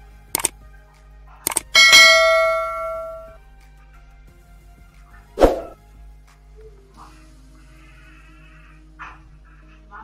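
Subscribe-button animation sound effect: two quick double clicks, then a bright bell ding that rings out for about a second and a half. A single soft thump follows about five and a half seconds in.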